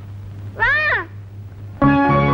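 A single high-pitched vocal call, about half a second long, rising then falling in pitch, over a steady low hum. Background music with sustained keyboard tones begins near the end.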